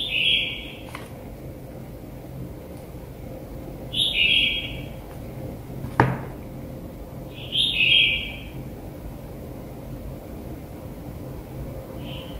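Short electronic two-note beeps, a higher note dropping to a lower one, sound three times about four seconds apart while an EZVIZ C1C Wi-Fi camera is paired with its phone app. A single sharp click comes between the second and third beeps.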